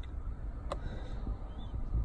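Multimeter probe tips scraping against a blade fuse's test points, with one sharp click partway through, over a low rumble. The probes are not yet making a good contact on the fuse.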